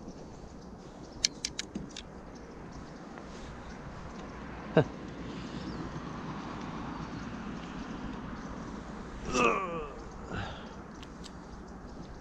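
Gear being handled on a plastic kayak: a quick run of light clicks a little over a second in, then one sharp click about five seconds in, from the fishing rod, reel and paddle. A brief wordless vocal sound comes near the end.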